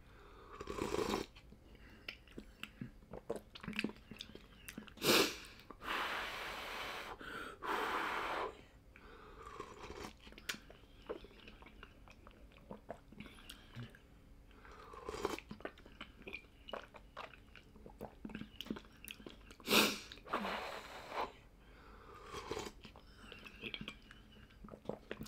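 A person drinking ground-meat soup broth straight from the bowl, with several long slurps in the first half. After that come chewing and wet mouth clicks.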